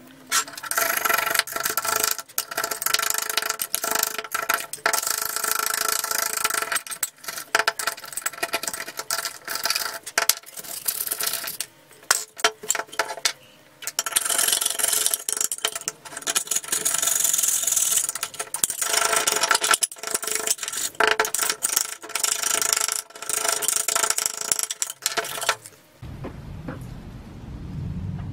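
Screwdriver tip scraping a white crusty deposit out of the inside corners of a bare metal lamp housing. It makes a gritty metal-on-metal scratching with rapid clicks, over a faint steady ring from the metal, in long runs with brief pauses.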